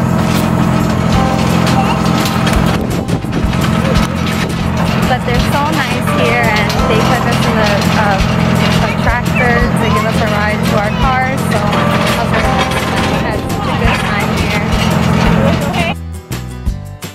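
Engine of the vehicle pulling a hay-ride wagon, running at a steady low drone, with people's voices over it in the middle of the stretch.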